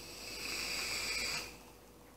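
Inhaling on a vape tank mounted on a box mod: airflow hiss with steady high whistling tones, lasting about a second and a half and then stopping.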